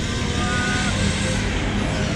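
Steady road traffic noise, with motorbikes passing on the road.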